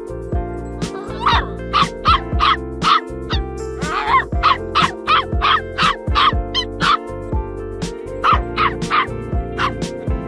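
Samoyed puppy yapping in a run of short, high barks, two to three a second, starting about a second in with a brief pause near the end. Background music with a steady beat plays under it.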